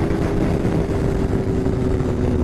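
Kawasaki ZX-10R sportbike's inline-four engine running steadily at highway cruising speed, heard onboard through a rushing wind noise.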